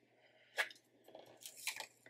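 Faint paper crackles and rustles as a paper sticker is handled and pressed onto a planner page: one short crackle about half a second in, then a few small ones near the end.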